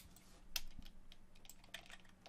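Keystrokes on a computer keyboard, a quick irregular run of about ten clicks with two louder strokes, over a faint steady hum.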